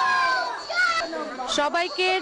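A crowd of young children shouting together in chorus, one long shout that trails off in the first half second. About a second and a half in, a group of women's voices starts up.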